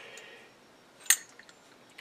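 Steel tap guide being handled: faint rubbing, then one sharp metallic click about a second in.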